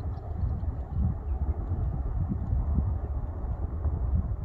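Low, uneven rumble of wind buffeting the microphone in an open field, rising and falling in gusts with no clear animal call over it.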